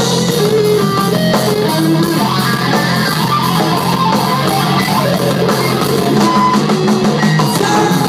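Post-hardcore rock band playing live and loud: two electric guitars, bass guitar and drum kit through a large outdoor PA.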